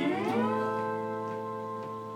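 A guitar note sliding down in pitch over about half a second, then held and ringing while it slowly fades, with a few faint plucked notes over it.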